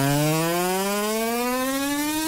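Electronic dance music build-up: a single buzzy synthesizer tone climbing slowly and steadily in pitch, a house-track riser.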